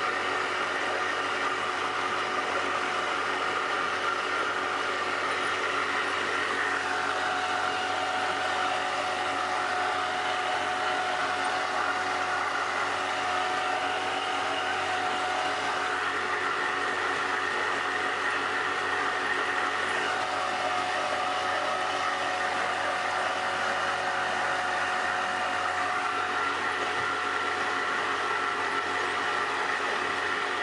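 Boat motor running steadily, heard from on board: a continuous drone with several steady tones that shift slightly in pitch a few times.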